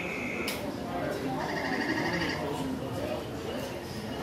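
Background voices in a large room, with electronic tones from an interactive exhibit screen: a short steady tone at the start, then a warbling tone about a second and a half in.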